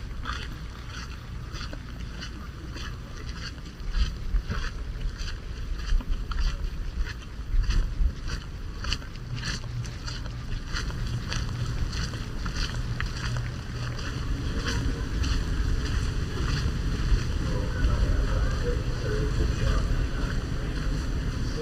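Wind buffeting the microphone in gusts, with a low rumble that strengthens about four seconds in, over steady walking footsteps about two a second.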